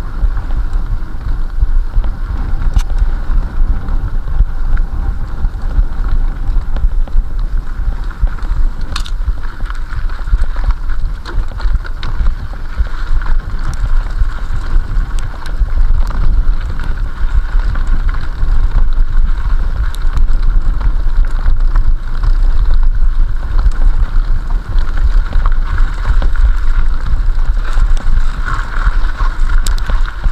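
Mountain bike riding fast along a dirt forest trail, heard through a rider-mounted action camera: continuous wind buffeting on the microphone over tyre rolling noise, with occasional clicks and rattles from the bike.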